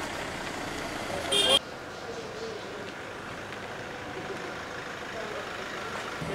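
Car driving slowly past with a steady engine and street noise. About a second and a half in comes a short, loud, high-pitched blast that cuts off suddenly.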